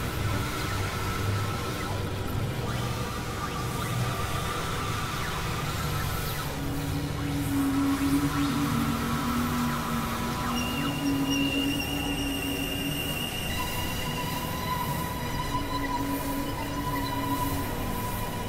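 Experimental synthesizer drone music: long held tones over a dense, noisy texture. A low held note comes in about six seconds in, and higher steady tones join around ten seconds in.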